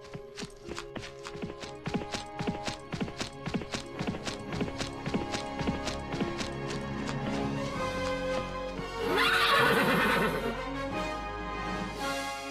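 Horse hooves clip-clopping at an even beat of about four a second over music with held chords, the hoofbeats fading out after about six seconds. About nine seconds in, a horse whinnies loudly, rising then falling, while the music plays on.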